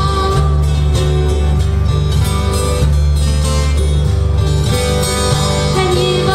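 Acoustic guitar and ukuleles strumming a Hawaiian song at a steady level, with a held sung note coming in near the end.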